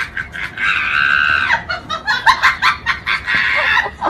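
A high-pitched, drawn-out cry about a second long, followed by shorter choppy cries and another held cry near the end.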